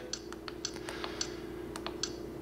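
A handful of light, sharp clicks of a trail camera's plastic menu buttons being pressed, over a faint steady hum.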